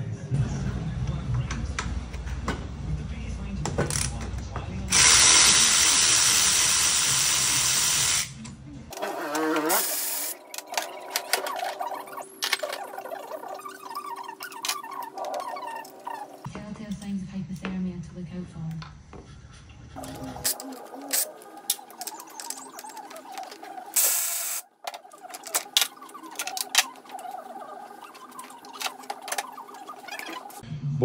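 Workshop hand-tool sounds as the brake calipers and front wheel come off a motorcycle: scattered clicks and knocks, with a loud steady hiss lasting about three seconds around five seconds in.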